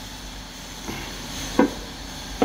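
Cast-aluminium engine timing cover being turned over by hand: a faint click about a second in and a short knock about one and a half seconds in, over a steady low hum.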